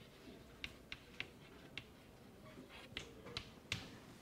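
Chalk writing on a chalkboard: a series of faint, sharp taps and short strokes as a word is written, the sharpest tap near the end.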